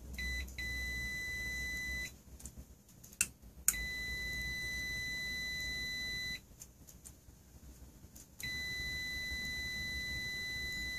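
High-pitched electronic beeping: a steady tone sounding in three long stretches of about two to three seconds each, separated by short gaps. Sharp clicks come just before the second stretch.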